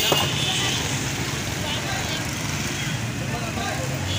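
Busy street ambience: steady traffic noise with voices in the background, and one short click right at the start.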